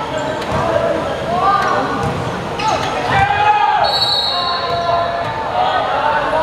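Volleyball players and spectators shouting and calling across the hall, with a few sharp knocks and shoe squeaks on the court. A referee's whistle is blown once, for about a second, about four seconds in: the signal for the serve.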